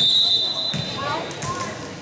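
Volleyball referee's whistle, one steady high blast of about a second, blown to authorize the serve.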